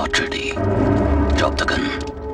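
Dramatic film-score sound design for a gun standoff. A sustained low drone and a rumble swell under sharp hits near the start and about one and a half seconds in.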